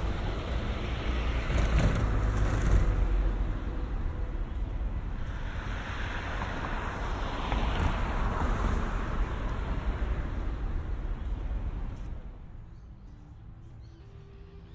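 City street traffic: a steady rumble of passing cars with a couple of louder swells as vehicles go by, dropping sharply quieter about twelve seconds in.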